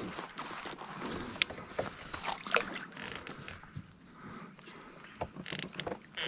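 Water splashing as a hooked smallmouth bass thrashes at the surface beside a kayak, with scattered small clicks and knocks.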